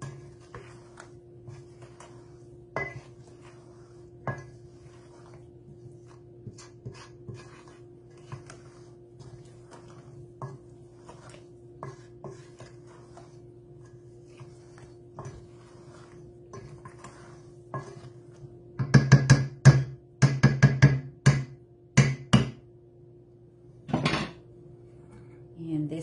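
A spatula scraping and knocking in a stainless steel mixing bowl as thick carrot cake batter is folded and the sides are scraped down, over a steady low hum. Small scrapes and clicks come throughout, then a run of much louder, ringing knocks against the bowl a few seconds before the end.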